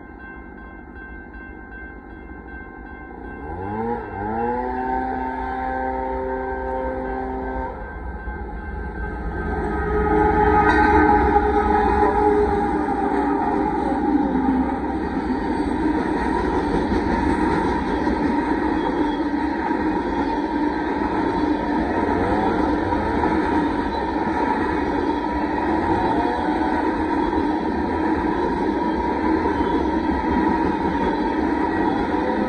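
Freight train at a road crossing. About 3.5 s in, the locomotive's horn sounds a long blast, sliding up into its chord as it starts, and a second, shorter blast follows around 9–12 s. The sound then becomes the steady din of the train passing close by, with wheels running over the rails.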